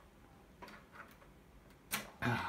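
A few faint clicks, then a sharper click near the end as a cable plug is pulled from its socket.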